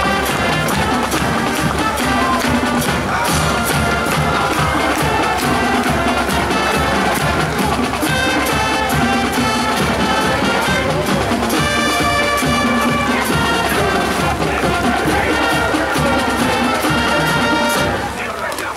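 Marching band playing, with brass and drums together. The music stops right at the end.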